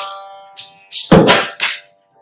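Mridangam strokes: a ringing stroke fades away over the first second, then three quick strokes about a second in, followed by a brief break near the end.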